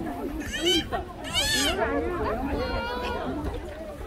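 Indistinct chatter of people talking nearby, several voices overlapping. A couple of louder, higher-pitched voices stand out at about half a second and around a second and a half in.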